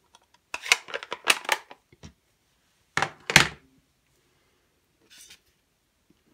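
Clicks and knocks of craft supplies being handled and set down on a work table: a quick run of light clicks early, then a louder thunk about three seconds in, and a faint rustle near the end.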